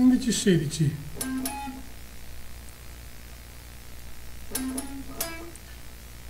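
Electric guitar, picked single notes played clean: a quick phrase of descending notes in the first second, another note just after, then a pause, then two more picked notes a little past the middle.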